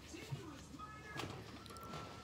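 Faint voices in the background, with music playing quietly.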